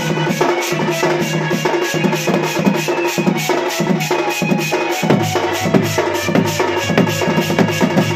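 Folk dance music led by a dhol, a two-headed barrel drum struck with one hand and a stick, beating a fast, even rhythm, with steady held tones underneath.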